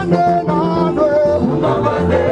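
Live music with singing: a lead male voice and a group of singers on microphones over instrumental backing with a steady bass line.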